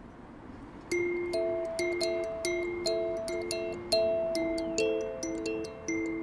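Ukulele picked in a steady pattern of bright, ringing notes, several pitches sounding together, starting about a second in: the instrumental intro of a song.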